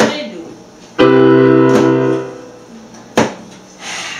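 Keyboard playing piano chords as the introduction of a gospel song: a struck chord at the start, a full chord held from about a second in until just past two seconds, then a short sharp hit a little after three seconds.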